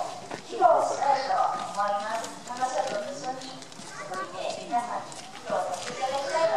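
Voices talking, with a few light knocks mixed in.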